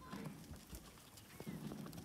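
Faint, irregular hoof steps of a Boer buck walking on dry dirt.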